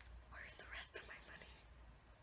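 Near silence: a faint breathy whisper from a woman between about half a second and a second in, over a steady low hum.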